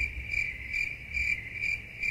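Cricket chirping, a steady high chirp pulsing about four times a second over a low hum. It starts and stops abruptly between bits of talk, like an edited-in 'crickets' sound effect for an awkward silence.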